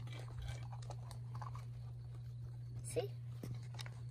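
Small plastic storage box being handled and its clear snap lid opened, with light plastic clicks and rattles, over a steady low hum.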